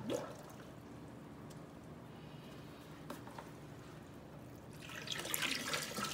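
A short knock near the start, then water from a hose fed by an aquarium power head begins pouring and splashing into a plastic tub of water about five seconds in, once the pump has pushed water up through the hose.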